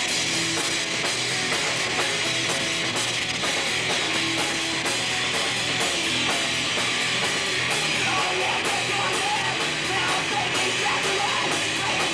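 A live rock band playing: electric guitar over a drum kit, with a steady beat of cymbal and snare hits about four times a second.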